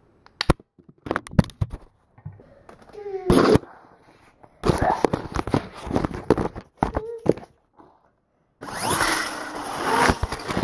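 A compact camera's own microphone picking up rough handling: a run of sharp knocks and clatters with stretches of rustling, and brief bits of a child's voice.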